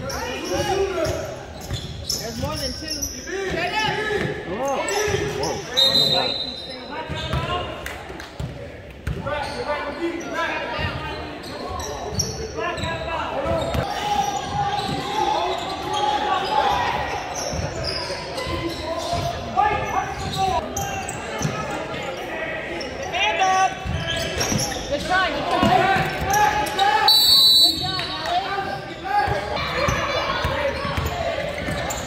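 Basketball bouncing on a hardwood gym floor amid the overlapping voices of spectators and players, all echoing in a large gymnasium. A brief high-pitched squeal sounds about 6 seconds in and again near the end.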